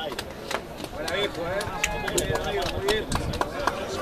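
Spectators and players shouting and calling out at a rugby match, several voices overlapping with no clear words, with scattered sharp taps and knocks throughout.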